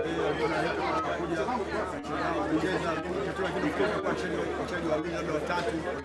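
Speech: a man talking steadily, with chatter of other voices behind him.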